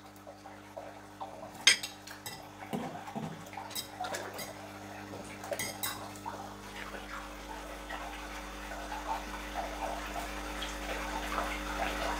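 Light splashes at the surface of a large aquarium as big cichlids and arowanas snatch floating food, with a few sharp clinks, over a steady low hum.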